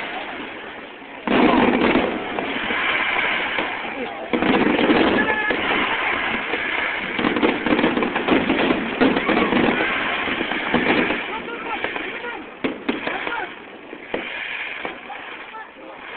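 Aerial fireworks bursting one after another, with crowd voices underneath. A loud burst comes in about a second in, and a few sharp cracks follow near the end.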